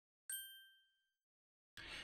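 A single bright ding, the logo sound effect of the intro, struck about a third of a second in and ringing out to nothing within about a second.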